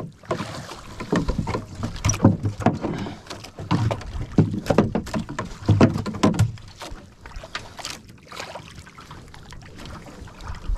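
Water splashing and slapping against the hull and outrigger of a small outrigger boat on choppy sea. The splashes come irregularly, about two a second, heavier for the first six seconds or so, then easing.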